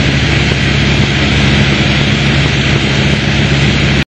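Piper Warrior's four-cylinder Lycoming engine and propeller running steadily at cruise power, heard from inside the cockpit.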